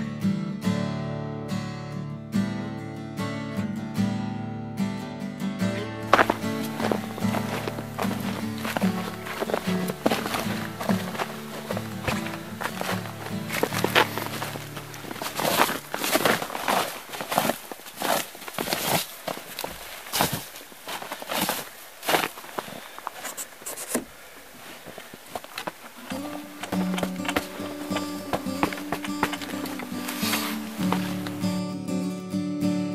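Acoustic guitar music for the first few seconds. It gives way to irregular footsteps, knocks and thunks as a hunter handles the door of a hunting blind. The music comes back near the end.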